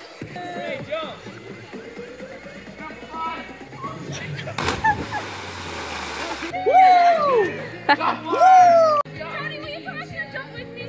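A person jumping off a concrete culvert into a creek: a big splash a little under five seconds in, with spray pattering down for about two seconds. Loud yells follow, over background music.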